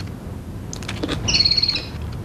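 A small caged bird chirping: a short, high trilling call in the second half, after a couple of soft clicks.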